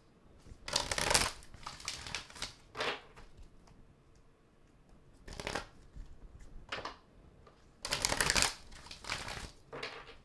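Deck of oracle cards being shuffled by hand, in about six short bursts with pauses between, the longest near the start and about eight seconds in.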